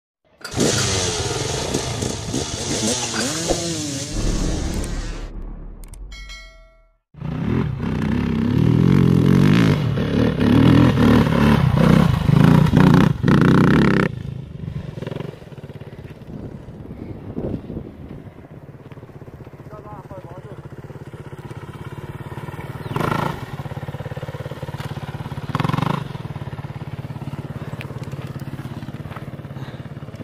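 Produced intro sounds with a short series of tones, then a motocross bike's engine running and revving as it climbs a steep dirt slope, with two brief louder bursts near the end.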